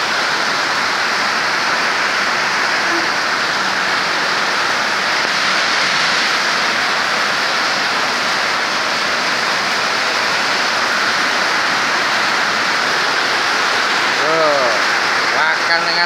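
Rain falling steadily, a loud, even hiss without a break. A voice cuts in near the end.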